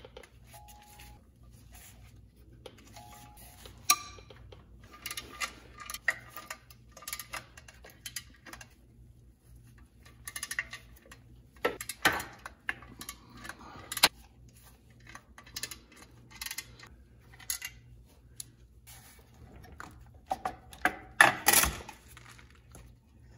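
Metal wrench clicking and clinking on the bolts of a car's clutch pressure plate as they are loosened one by one around the plate, in scattered short taps. A louder cluster of metal clatter comes near the end as the plate is handled.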